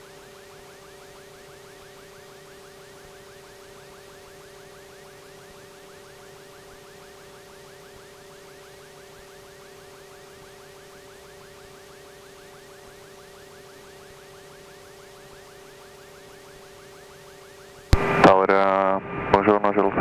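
Steady drone of the PA46 Meridian's turboprop engine and propeller in cruise at set power, heard faintly as a few unchanging tones. Near the end a loud air traffic control radio call cuts in suddenly.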